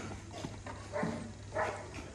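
An animal calling three times in short bursts, about half a second apart, over a steady low hum.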